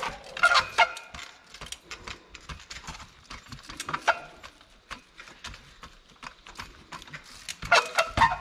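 Trials bike hopping over rocks: a series of irregular knocks and clicks as the tyres and rims land on and bump against the rock, loudest about half a second in and again near the end.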